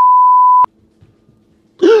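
A steady 1 kHz test tone of the kind played with colour bars (bars and tone), loud and unwavering, cutting off suddenly about two-thirds of a second in. Faint room hum follows, and near the end a man's voice starts with a sighing 'oh'.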